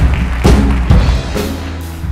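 Live worship band starting to play: a few drum-kit hits over sustained bass and chords.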